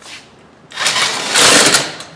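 Impact wrench running on an ATV wheel nut, a loud burst of hammering that starts just under a second in and lasts about a second.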